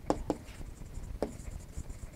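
Marker pen writing on a board, with a few short taps as the strokes are made.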